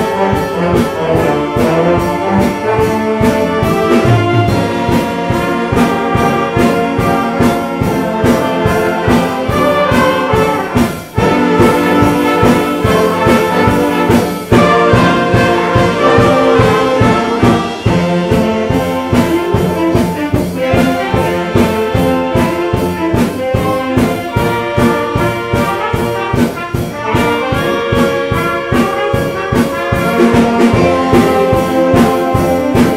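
A student band of brass, flutes and violins playing a Christmas song together over a steady beat, with the trombones and trumpets prominent.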